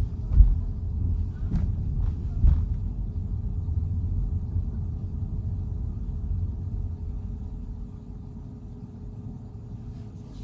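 Low road and tyre rumble inside a Tesla's cabin as it rolls along at low speed, with a few short knocks in the first three seconds. The rumble eases off after about seven seconds.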